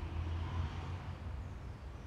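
A steady low rumble, swelling a little louder for about the first second and then settling back.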